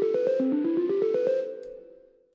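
A sampled microwave timer beep played as a pitched instrument: fast runs of short notes climbing in pitch, the last note held and fading out near the end.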